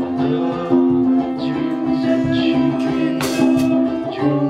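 Live acoustic band music: a strummed ukulele over bass, with harmonica in the middle of the passage, and two bright percussion hits near the end.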